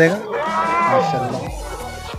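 A goat bleating: one long, wavering bleat. Background music with a deep bass beat comes in near the end.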